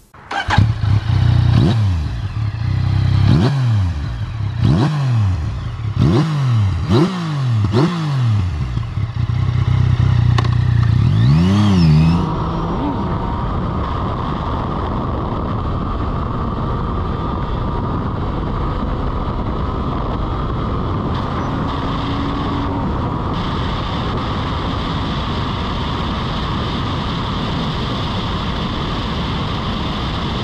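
Yamaha MT-09's three-cylinder CP3 engine with an Akrapovič exhaust, accelerating hard through the gears: the pitch climbs and drops sharply at each upshift several times. About twelve seconds in it gives way to a steady rush of wind noise at high speed.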